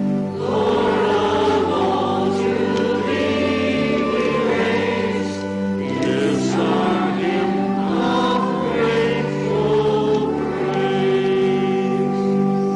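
Singing in a church, accompanied by an organ: the organ holds steady chords while the voices sing a slow melody in phrases of a few seconds each.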